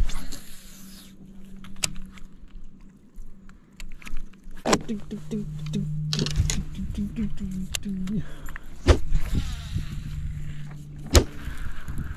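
Electric trolling motor humming steadily, its pitch dropping about five seconds in as the speed changes. Several sharp knocks cut through the hum.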